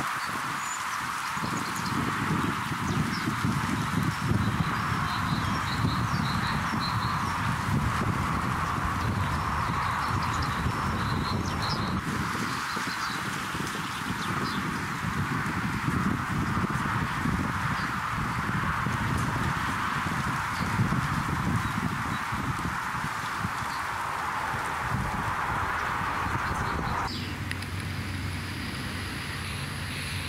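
Gusty wind buffeting the microphone, a low uneven rumble over a steady hiss, with faint short bird chirps during the first dozen seconds. The hiss drops away suddenly near the end.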